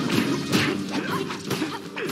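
Film fight-scene soundtrack: a rapid string of sharp hits and crashes, a few each second, over background music.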